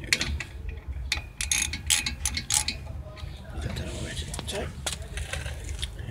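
Hand socket ratchet clicking as a brake caliper bolt is run in and tightened, a run of irregular clicks mostly in the first three seconds.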